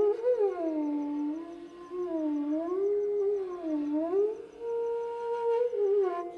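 Venu, the Carnatic bamboo flute, playing a slow phrase in raga Ranjani: the melody sweeps up and down in deep, smooth glides, then settles on a held note near the end. A faint, regular high ticking runs underneath.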